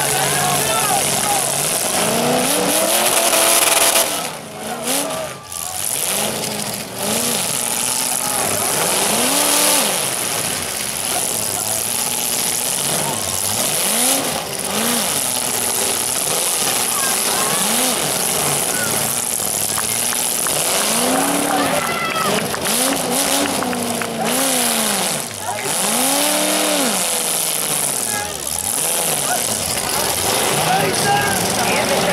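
Demolition derby car engines revved up and down again and again, each rev rising and falling over about a second, over a steady din of crowd voices.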